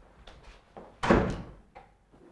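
A wooden door being pulled shut, closing with one thud about a second in, followed by a softer click.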